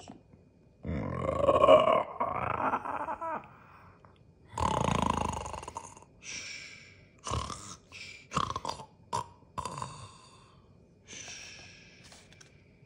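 A man imitating snoring with his voice: two long, loud snores, the first the loudest, then a run of shorter snorts and one more near the end.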